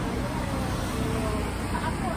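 Steady low rumble of road traffic, with faint voices in the background.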